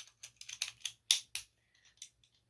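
A quick, uneven run of light plastic clicks and taps, the loudest just after a second in, from Beyblade spinning tops and launchers being handled to get ready for the next battle.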